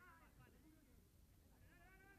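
Near silence with faint, distant shouted voices, one call at the start and another near the end, over a low rumble.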